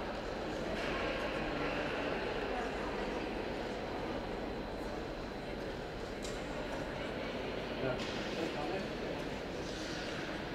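Indistinct murmur of voices echoing in an ice arena, over a steady background hum of the hall.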